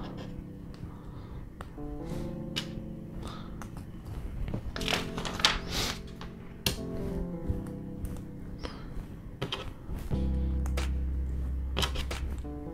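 Background music of held synth-like chords, with a deeper bass note coming in near the end. Now and then small plastic LEGO pieces click and rattle as they are handled.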